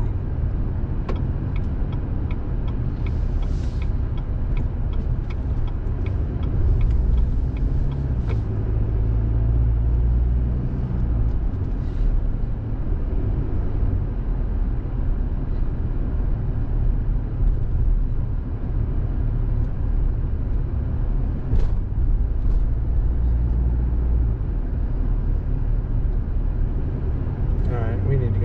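Steady low rumble of a car's engine and tyres heard from inside the cabin while driving at low town speed, swelling a little as it speeds up at times. A faint regular ticking runs through the first several seconds.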